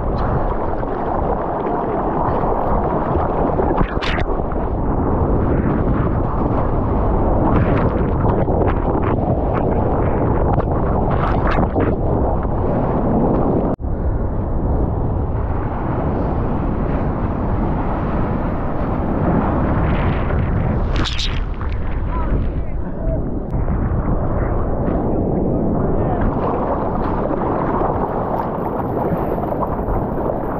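Continuous rush of sea water and wind on a waterproof action camera held at the water's surface, with short splashes against the housing. There is a brief drop-out about a third of the way through.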